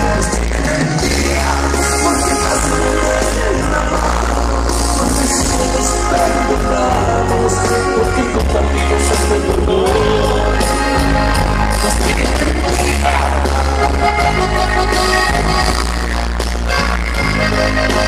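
Loud norteño band music, with singing over a heavy, steady bass line.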